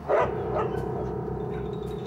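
A dog giving a short yelp just after the start, then a long, steady whine.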